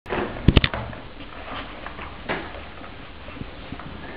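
Sharp handling clicks and knocks in a small room: a quick cluster of three about half a second in, then a few fainter knocks.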